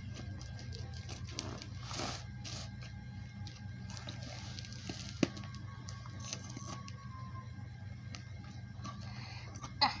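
Scissors working at a parcel's plastic wrapping: scattered snips, scrapes and crinkles of plastic, with one sharp click about five seconds in.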